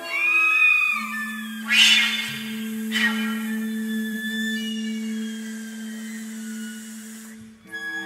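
Contemporary chamber music for flute, clarinet, bass trombone, viola and cello: a short slide up and back down in pitch that sounds cat-like, then a long held low note, with two short noisy attacks about a second apart and a higher note joining midway.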